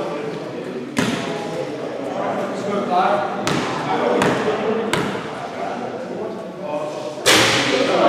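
Basketball bouncing a few times on a sports-hall floor, each bounce a sharp knock in a reverberant hall, over voices from the players and benches. A louder wash of noise starts near the end.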